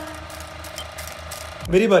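The tail of a channel intro sting: a faint held tone with light, quick clicking over it. Near the end a man's voice cuts in briefly.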